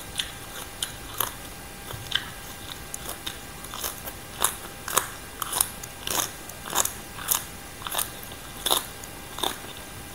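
A person biting and chewing crisp raw green vegetable stems: a run of sharp crunches, sparse at first, then about two a second from about four seconds in.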